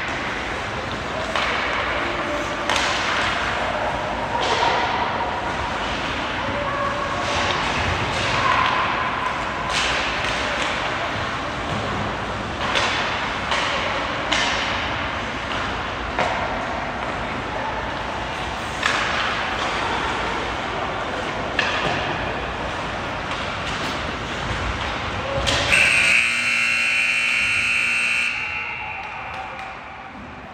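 Ice hockey play: skate blades scraping and sticks and pucks knocking on the ice and boards, with players' shouts. About 25 seconds in, the arena horn sounds steadily for about three seconds.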